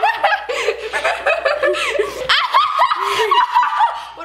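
Several teenage girls laughing together, with bits of talk mixed in.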